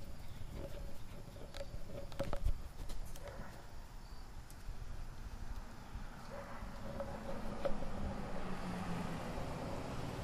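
Footsteps and rustling through grass with handling noise on the microphone as the camera is carried along at close range, with a few light knocks about one and a half to two and a half seconds in.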